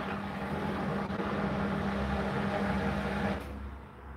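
Hotpoint NSWR843C washing machine working partway through a 40°C wash, a steady hum with a rushing noise that cuts off a little over three seconds in, leaving a low rumble.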